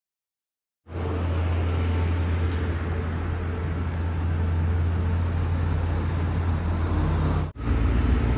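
City street traffic: a steady low engine rumble with road noise. It starts abruptly about a second in, breaks off suddenly near the end, and resumes briefly.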